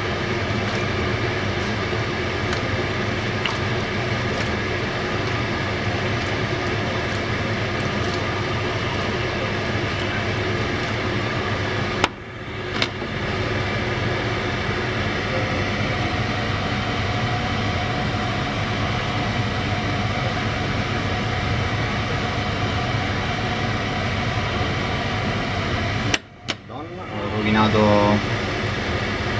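A steady mechanical hum, like a fan or motor running in a kitchen, with faint background voices and light clinks of a metal pan being handled. The sound drops out briefly twice, about twelve seconds in and near the end.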